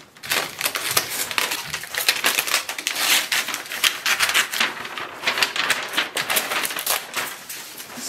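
Brown kraft packing paper crinkling and tearing as it is pulled off a package by hand, a dense run of crackles, after scissors cut the packing tape at the start.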